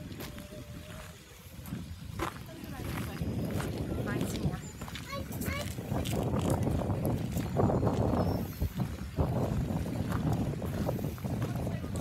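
Wind buffeting the microphone, a loud low rumble that swells from about two seconds in, with indistinct voices of people in the background. A short run of high chirps comes about five seconds in.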